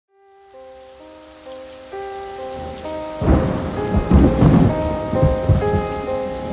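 Music intro of slow, held melodic notes growing louder, joined about three seconds in by the sound of rain and rolling thunder.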